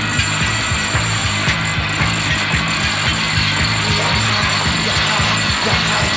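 Industrial noise-music soundtrack: a fast, even mechanical clatter like a ratchet, about four beats a second, over a dense hiss.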